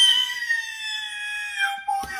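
A man's long, high-pitched wailing cry, held on one breath, rising a little at first and then slowly sinking in pitch.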